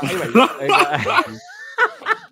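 Several people laughing and chuckling at a joke, mixed with bits of speech.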